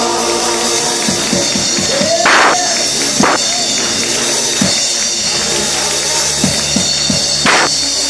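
Gospel instrumental music: a keyboard holds sustained chords while a drum kit adds a few cymbal crashes and lighter hits, the largest about two and a half and seven and a half seconds in.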